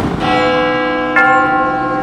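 A church bell tolling: two strikes about a second apart, each one ringing on.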